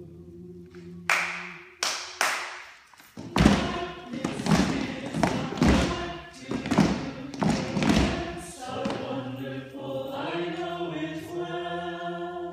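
A group singing a refrain in unaccompanied harmony, held chords at first. A few knocks come just after the first second, then a run of about eight regular thuds, roughly one every 0.6 s, before the sustained group singing takes over again near the end.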